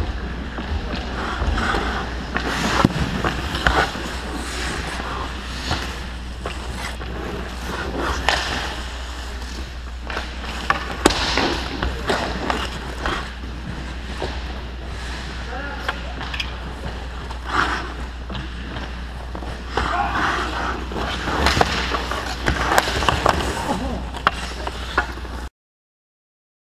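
Ice skates scraping and carving on a rink surface, with hockey sticks clacking and pucks striking sticks, pads and boards in sharp knocks scattered through, over a steady low hum.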